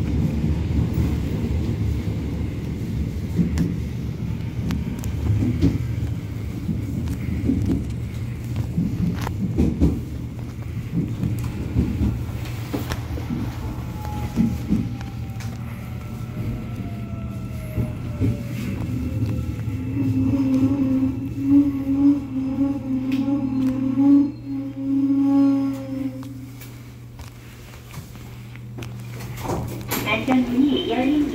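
Busan Metro Line 1 electric train running in tunnel with a steady low rumble, then slowing into a station: from about halfway a motor whine falls in pitch, a steady low electric hum sounds for several seconds near the end of braking, and the noise drops as the train comes to a stop.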